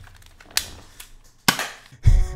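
Two short sharp clicks about a second apart, the second one louder, over a low background.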